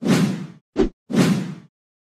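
Three whoosh sound effects in quick succession, each with a low thud in it. The first and last are each about half a second long, and a short one falls between them.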